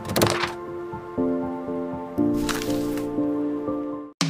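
Intro music for an animated logo: sustained synth chords that change twice, with a few sharp clicks near the start and a whoosh a little past halfway.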